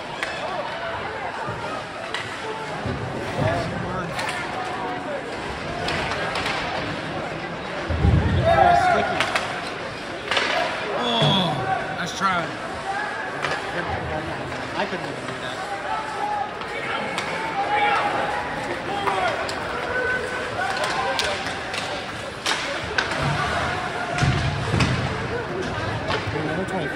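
Ice hockey game sound: spectators' and players' voices and chatter mixed with sharp clacks of sticks and puck, and one heavy thud about eight seconds in.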